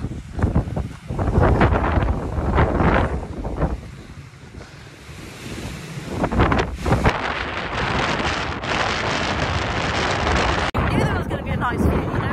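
Gusty wind buffeting the microphone, rising and falling, with a lull a few seconds in before it picks up again.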